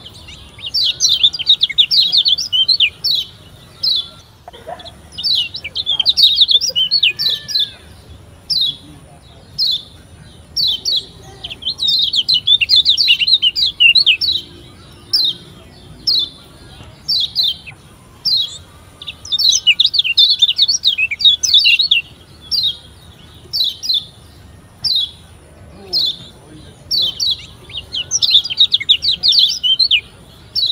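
Kecial kuning (Lombok yellow white-eye, a Zosterops) singing: bursts of fast, high chattering trills a second or two long, alternating with single sharp chirps about once a second.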